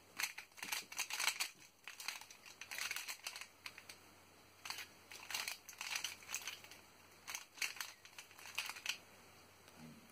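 Plastic layers of an X-Man Volt Square-1 puzzle being turned and sliced by hand while it is scrambled, in irregular runs of quick clicks and rattles with short pauses between.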